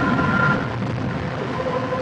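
Paper mill pulper churning a large batch of wet recycled pulp slurry: a loud, steady rumbling wash of noise with a machine hum underneath. A high tone in the hum stops about half a second in.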